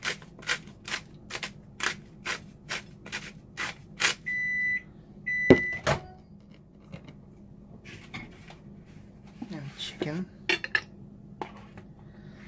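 A salt grinder being twisted, crunching in quick strokes about two or three times a second for the first four seconds. Then a kitchen appliance gives two electronic beeps of about half a second each, a sign that the chicken has finished reheating. A sharp knock, the loudest sound, falls during the second beep.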